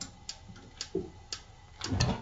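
A few light, sharp clicks and taps, irregularly spaced about half a second apart, with a softer knock about a second in.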